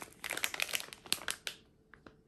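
Plastic multipack bag of soup-base pouches crinkling as it is handled and held up: a quick run of sharp crackles that stops about three-quarters of the way in.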